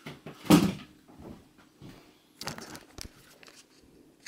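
Camera handling noise in a small room: a loud thump about half a second in, then a cluster of sharp knocks and clicks a couple of seconds later as the camera is picked up and moved.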